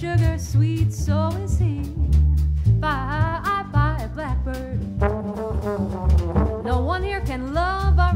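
Jazz trombone playing melodic fills with bending, sliding notes, over an upright bass and drum kit keeping time.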